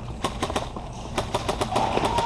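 Airsoft guns firing: a scattered, irregular run of sharp snapping shots.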